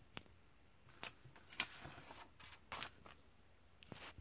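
Comic book pages being turned: a short tick, then a run of papery swishes and crinkles over about two seconds, and another tick near the end.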